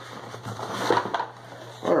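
Cardboard subscription box being cut and opened by hand, a run of crackling, scraping and rustling.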